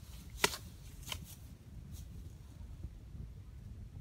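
Dry bamboo grass stalks being cut, with two crisp snaps, the first about half a second in and the second about a second in, and a fainter one near two seconds. After that only a low, steady background hum remains.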